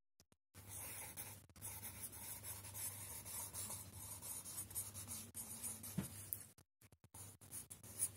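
Pencil writing on a paper worksheet: a faint, scratchy rasp that runs for about six seconds as a word is written out, then stops.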